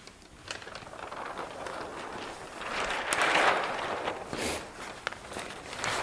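A large sheet of newsprint rustling and crinkling as it is lifted off a print and handled, loudest about halfway through.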